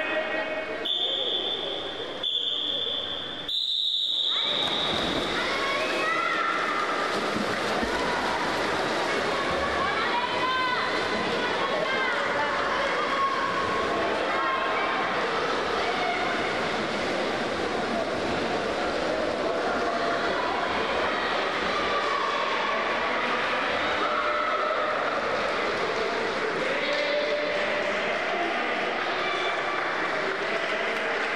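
A high steady start signal sounds three times in the first four seconds, the third the loudest, as a swimming race begins. Then a crowd of children shouts and cheers steadily in an indoor pool hall while the race is swum.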